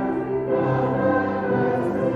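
Hymn music played on a keyboard instrument: held chords that move to new notes about every half second.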